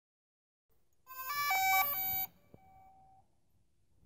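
A short electronic logo jingle: starting about a second in, a quick run of beeping notes steps up and down for about a second, then one held note lingers and fades.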